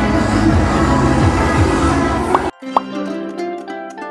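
Outdoor street and crowd ambience that cuts off abruptly about two and a half seconds in. A short pop sounds at the cut. Light background music of plucked-string notes then takes over.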